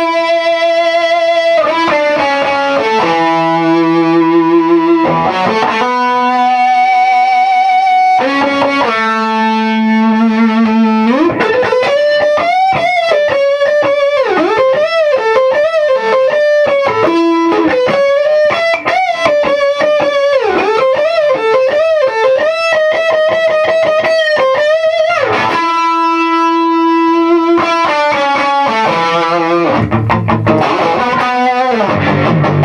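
A 1959 Gibson Byrdland thinline hollow-body electric guitar, played through an effects pedal with the amp driven loud, picks out a slow melody in which every note rings out into sustained feedback with wide vibrato. About a third of the way in, a rising bend leads into a long run of quick bent, wavering notes before long held notes return near the end.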